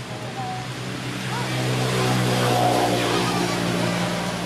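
A motor vehicle's engine passing by, a steady hum that swells to its loudest a little past the middle and then eases off.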